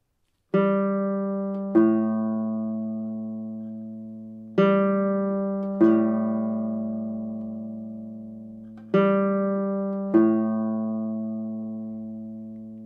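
Classical guitar playing a descending major seventh, G down to A: two plucked notes, each left to ring. The interval is played three times, about four seconds apart.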